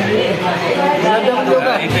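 Several people chatting at once, their voices overlapping.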